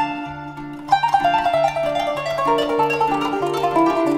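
Turkish kanun (qanun) being plucked: a running melody of short ringing notes over a steady pulse of low notes, about two a second.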